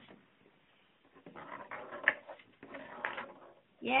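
Faint clicks and taps of small toy atom spheres rolling and knocking together on a wooden tabletop, with one sharp click about two seconds in. Near the end comes a loud, high-pitched cheer of "yay".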